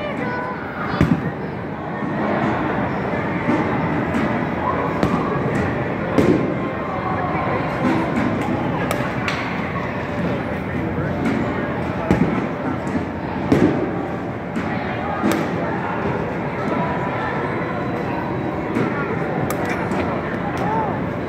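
Sharp knocks of baseballs in a batting cage, one every few seconds at uneven spacing, over a steady indoor din.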